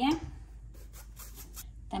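A run of faint, irregular scratchy taps from kitchen utensils being handled, such as a measuring spoon and ingredient containers on a countertop.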